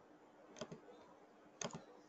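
Faint clicks from a computer being operated: two short double clicks about a second apart, against near silence.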